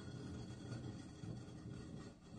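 A quiet pause between spoken sentences, holding only a faint, steady low background hum.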